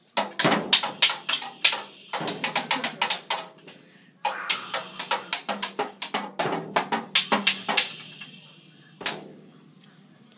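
Toddler banging on a small children's drum kit with sticks: fast, uneven strikes on the drums and cymbal in three flurries with short pauses between, then a single hit near the end.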